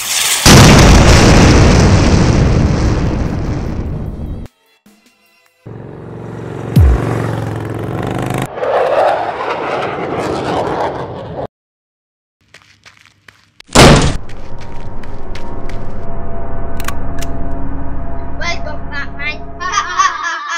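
A loud explosion sound effect right at the start, dying away over about four seconds, followed by more noisy effects; after a short silence, a second sharp bang about fourteen seconds in, then a steady background of music with voices near the end.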